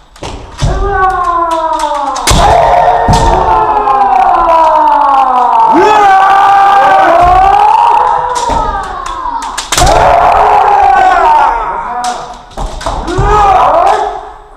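Kendo fencers' long, drawn-out kiai shouts, several voices overlapping and wavering in pitch, punctuated by sharp cracks of bamboo shinai strikes and stamps on the wooden floor.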